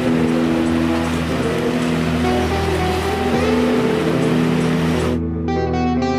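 Background music of steady held notes over the rush of surf breaking on rocks; the surf noise cuts off suddenly about five seconds in, leaving the music alone.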